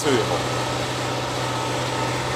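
Diesel engine of a LOVOL 1054 tractor running steadily while tilling, heard from inside the cab as an even, unchanging drone.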